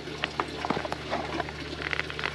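Small irregular clicks and taps of a book being handled and lifted out of a cardboard gift box, with a brief paper rustle near the end. Underneath is the steady trickle and hum of water running through a hydroponic NFT system.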